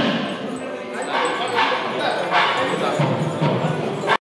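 A crowd's voices mixed with music, loud and continuous.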